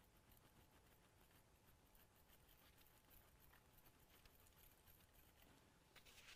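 Near silence, with a few faint ticks of a palette knife working oil paint on a glass palette.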